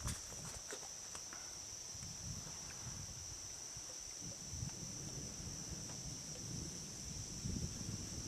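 Crickets chirping in a steady, high-pitched night chorus, faint, over a low uneven rumble with a few soft knocks.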